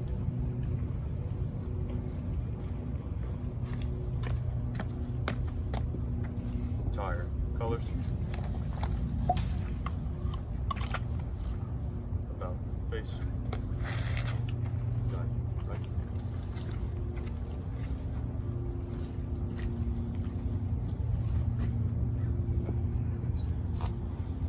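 A steady low mechanical hum, like a motor running, with scattered light clicks and knocks and a short burst of hiss about fourteen seconds in.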